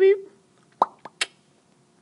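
A voice holding a drawn-out 'beep' that ends just after the start, then three short clicks or pops in quick succession about a second later.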